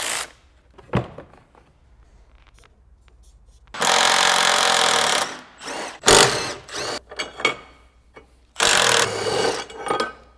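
Cordless ratchet running in short bursts as bolts are spun out, a longer run about four seconds in and a shorter one near the end. Metal knocks and clatter from handling the tool and parts come in between.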